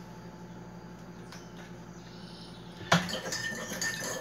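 Kitchen room tone with a low steady hum, then a sharp knock about three seconds in followed by light clinks of a coffee mug and spoon.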